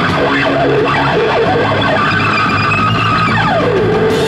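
Live punk rock band playing an instrumental passage: a distorted electric guitar lead with string bends over bass guitar and drums, ending in a long slide down in pitch.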